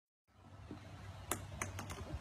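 A small ball bouncing on a wooden deck: four sharp clicks in the second half, each coming quicker than the last, over a low rumble.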